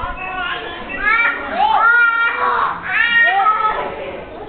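Young children squealing and shrieking in play: a string of high-pitched cries that rise and fall in pitch, the loudest about two seconds in.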